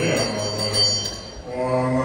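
Deep male voices chanting Tibetan Buddhist prayers in a long, held, low-pitched drone, with a brief break about one and a half seconds in.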